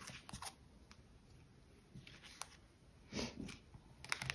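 Faint handling of tarot cards on a cloth-covered table: a few light clicks and taps, with a soft rustle about three seconds in.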